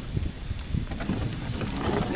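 Low wind rumble on the microphone with scattered soft handling knocks, and a faint murmuring voice near the end.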